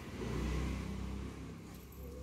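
A motor vehicle engine runs, swelling to its loudest about half a second in and then easing off to a lower steady rumble.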